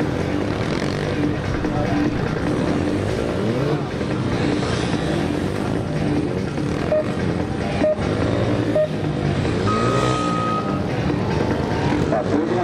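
Honda CB250R's single-cylinder engine revving up and down again and again as the bike is throttled hard out of each tight cone turn and slowed into the next. A short steady high tone sounds near the end.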